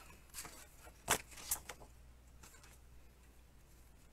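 A two-and-a-quarter-inch hand-held circle punch cutting through a scrap of cardstock: one sharp clack about a second in, then a lighter click shortly after, with a few faint handling clicks before.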